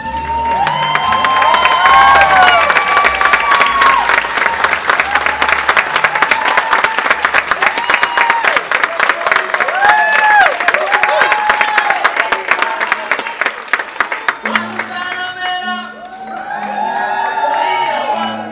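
Audience applauding and cheering, with whoops rising and falling over dense clapping. About fourteen and a half seconds in, the applause stops and music begins.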